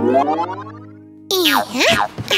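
Cartoon sound effect: a pitched tone with many overtones gliding upward and fading away over about a second. It is followed by a short wordless cartoon-character vocal sound that dips and rises in pitch.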